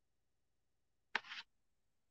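Near silence, then one short, sharp noise about a second in, lasting about a third of a second.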